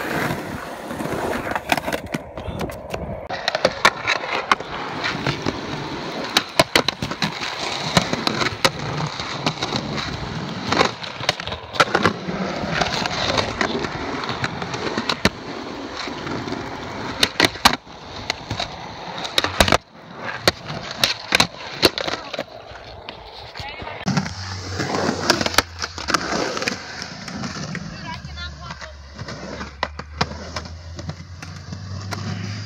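Skateboard wheels rolling on rough concrete, with many sharp clacks spread throughout as the board's tail and trucks strike the ground.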